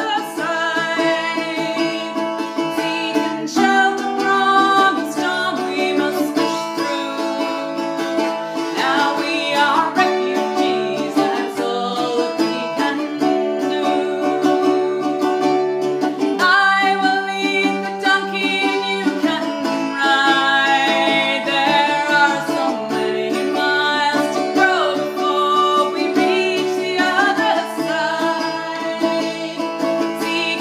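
Music: a woman singing, accompanying herself on a mandola.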